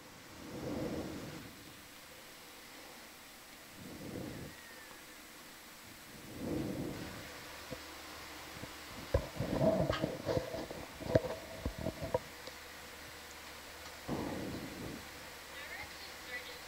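Indistinct, muffled voices coming and going in short spells. A cluster of sharp clicks and a brief steady tone come about two-thirds of the way through.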